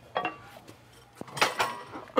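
A few short metallic clinks with a brief ring, the loudest about one and a half seconds in, from a loaded steel barbell knocking in the rack's hooks as the lifter grips it and sets up.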